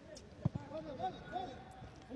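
Football kicked once with a dull thud about half a second in, over faint distant shouts from players on the pitch.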